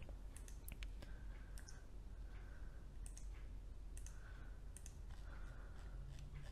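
Faint, irregular sharp clicks, a dozen or so, over a steady low hum.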